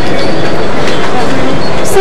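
Loud, steady rushing noise from a tiny cap-mounted camera's microphone, with indistinct voices faintly underneath.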